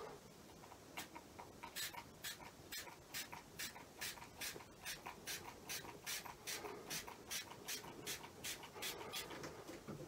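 Small finger-pump spray bottle misting water onto wet watercolour paper: a quick, even run of short, faint hisses, about three a second, starting about a second in.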